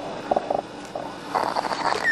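A kitten's funny growling sounds through a constricted throat: a few short pulses about half a second in, then a longer rasping breath near the end. The narrator believes her larynx is crushed from a bite to the throat.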